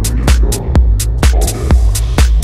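Techno track: a four-on-the-floor kick drum about twice a second, with hi-hats between the kicks over a deep, steady bass. A brighter hiss swells in during the second half.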